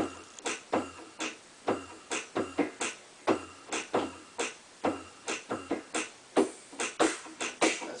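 Drum sounds from a Korg M50 synthesizer's drum kit patch, played live on the keys: a simple, steady beat of kick and snare-like hits, a few strokes per second.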